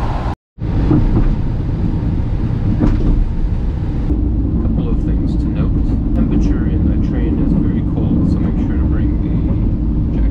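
Steady low rumble inside a Thai State Railway sleeper train carriage, broken by a brief dropout to silence about half a second in, with faint background voices.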